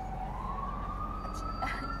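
Emergency-vehicle siren in a slow wail: a single tone that dips and then rises steadily in pitch, over a low steady street rumble.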